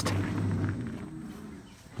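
A deep, steady-pitched growl from a recorded dinosaur roar sound effect, fading away over about two seconds.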